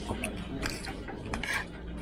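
Metal spoon and fork clinking and scraping against a plate while eating, several short sharp clinks spread through the moment.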